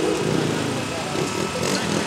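Busy street background: crowd chatter mixed with the running of a small engine, like a passing motorcycle.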